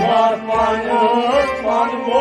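Kashmiri Sufiyana music: a voice sings a long, wavering, ornamented melodic line over a steady drone, with low drum strokes underneath.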